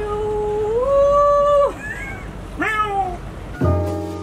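A person singing in a high voice: one long held note that steps up in pitch partway through and breaks off, then a short sliding note. Near the end, piano music starts abruptly.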